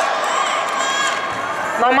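Crowd of spectators talking and calling out in a large hall, many voices overlapping; a man's voice over the public address begins speaking near the end.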